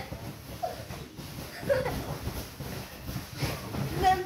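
A dog pawing and treading at a fabric bean bag bed to rearrange it into a comfortable shape, the cover rustling and the bag's filling shifting in a run of soft, irregular scuffs.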